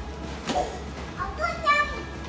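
A small child's voice: a short sound about half a second in, then a few high-pitched, held squeals near the end.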